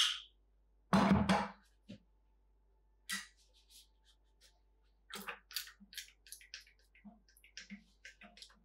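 Handling noises from a plastic fermenting bucket: a loud hollow knock about a second in, then a run of short, irregular scrapes and clicks as a bottle brush is worked inside the bucket.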